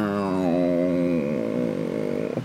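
A man's voice imitating an aircraft engine: one long held drone that sinks slowly in pitch, then holds steady on a lower note.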